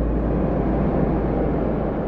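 A steady low rumble with a noisy hiss over it and no clear pitched notes.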